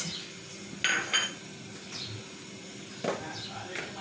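Dishes clinking as a ceramic plate and an aluminium cooking pot are handled: two sharp, ringing clinks about a second in and another knock near the end.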